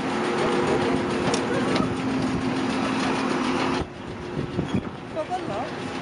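Jet airliner running on an airport apron: a loud, steady hum of several held tones over a rushing noise. It drops off suddenly about four seconds in to a quieter background with a few brief voices.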